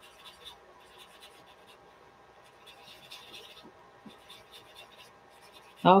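A tightly rolled paper towel rubbing over pencil graphite on drawing paper, blending the shading. It makes faint scratchy strokes in a few short spells.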